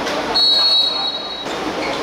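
Referee's whistle blown once: a single steady, shrill blast of about a second, signalling the kickoff.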